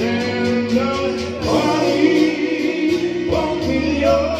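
A man singing held notes into a microphone, with an electronic keyboard and a steady beat behind him, all coming through PA speakers.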